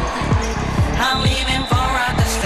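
Electronic dance-pop music with a steady kick drum about two beats a second under a synth melody.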